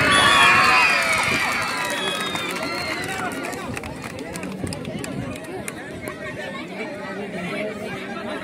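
Crowd of spectators cheering and shouting, many high voices at once, loudest in the first second and dying down over about three seconds into a steady hubbub of chatter.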